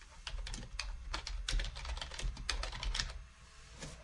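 Typing on a computer keyboard: a fast, uneven run of keystrokes that stops near the end.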